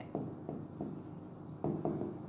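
Stylus strokes scraping on an interactive display board as a word is handwritten: a few short, faint scratches, with a slightly louder stroke near the end.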